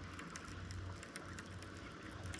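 Faint, irregular light clicking and ticking from a baitcasting reel and lure being handled, over a steady low hum.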